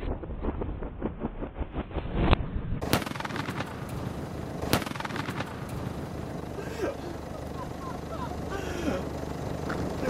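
Petrol-and-expanding-foam fireball burning with dense crackling and popping. Sharp bangs come about two, three and five seconds in.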